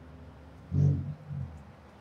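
Two short, low-pitched voice-like sounds a little under a second in, the first loud and the second weaker, over a faint steady hum.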